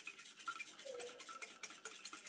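Wire whisk beating whipping cream in a mixing bowl: a fast, faint run of clicking scrapes as the whisk strikes the bowl. The cream is still liquid, at the start of being churned into butter.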